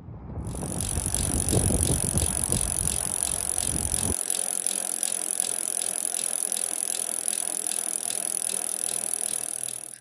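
An e-bike being ridden, heard from a handlebar-mounted camera: tyre noise and rattling with a fast, even ticking. A low rumble stops about four seconds in.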